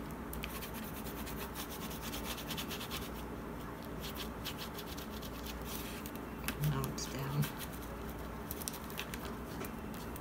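A bone folder rubbing over paper glued onto a cardboard cover, pressing it down as the glue dries: a run of short, dry scratching strokes. A brief murmur from a voice comes about two-thirds of the way through.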